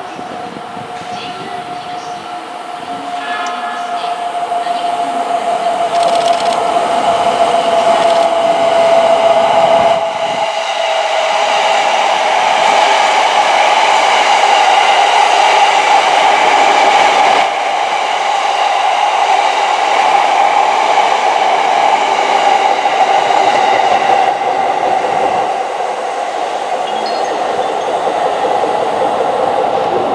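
JR East E231 series 500 subseries electric commuter train, its traction equipment newly renewed, passing at speed. A steady whine that drops slowly in pitch grows louder for about ten seconds as the train approaches. Then the loud rush of wheels on rail takes over as the cars go by.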